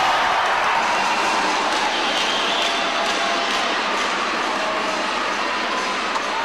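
Ice hockey arena crowd: a steady noise of many voices and shouting from the stands.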